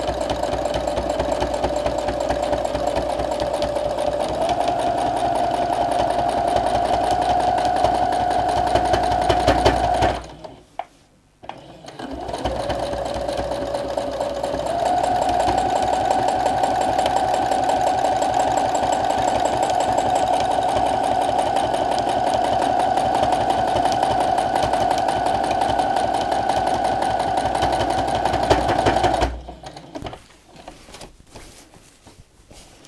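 Domestic sewing machine running at speed for free-motion quilting, a steady motor whine over the rapid needle stitching. It speeds up with a step up in pitch about four seconds in, stops for about two seconds around ten seconds in, restarts and speeds up again, then stops shortly before the end.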